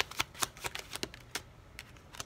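Tarot cards being shuffled by hand: a quick run of card clicks and snaps that thins out after about a second and a half.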